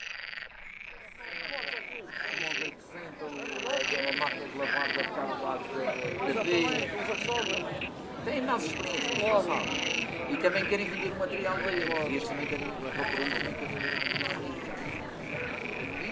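Short croaking animal calls repeating roughly once or twice a second over an uneven lower layer of sound, from a film's soundtrack played back over a video call.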